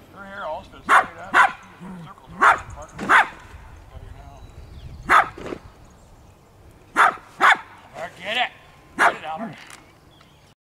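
Small dog barking sharply at intervals, about nine barks, several coming in quick pairs.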